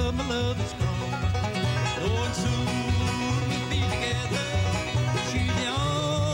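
Bluegrass band playing live: fiddle, banjo, mandolin and acoustic guitar together at a steady driving beat.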